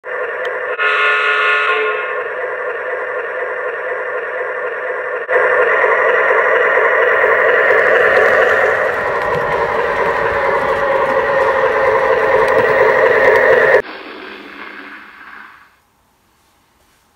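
O-scale model diesel locomotive's onboard sound system sounding its horn over steady running sound: a short blast about a second in, then a long held blast from about five seconds in that cuts off sharply near the end, leaving a quieter sound that fades away.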